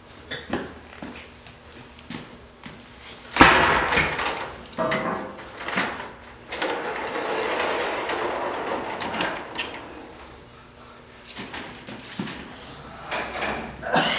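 Old elevator's wooden door and slatted gate being worked by hand: a loud bang a few seconds in, then several seconds of sliding noise and scattered knocks.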